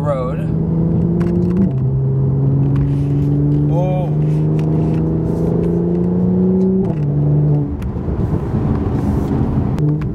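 Car engine and exhaust heard from inside the cabin under hard acceleration: the engine note climbs steadily in pitch and drops suddenly at two upshifts about five seconds apart, then eases off as the driver lifts near the end.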